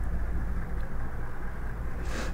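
Steady low hum and hiss of background noise picked up by a recording microphone, with a faint tick a little under a second in.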